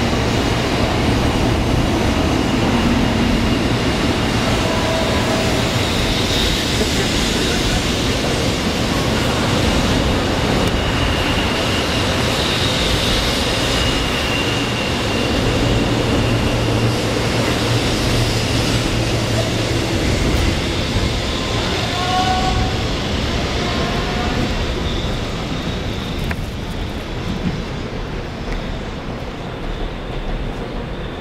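0 Series Shinkansen train pulling out along the platform and running past, a steady rumble of wheels on rail with a low hum and a faint high whine. The sound fades over the last several seconds as the train draws away.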